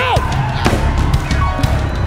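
Live church band playing a loud, drum-heavy groove with sustained keyboard-like tones over a pounding low beat, just after a shouted word at the very start.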